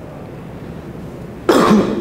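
Quiet room tone, then one short, loud cough from a man about a second and a half in.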